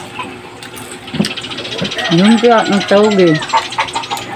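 Mouth sounds of eating crisp fried lumpia (spring rolls): crunchy bites and chewing clicks, with two wordless hummed sounds, rising then falling in pitch, about two seconds in.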